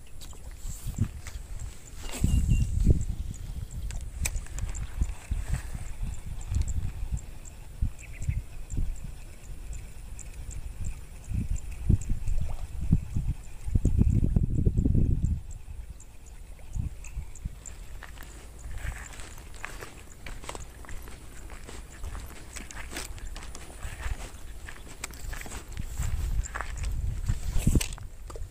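Footsteps on a grassy bank and handling noise close to the microphone: irregular low thumps and rustles, with louder low rumbles about two seconds in and again around fourteen seconds.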